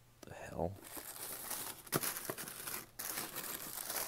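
Tissue paper crinkling and rustling as hands pull it back inside a cardboard shoebox, with a few sharp crackles around two seconds in and a short lull near three seconds. A man says "No" about half a second in.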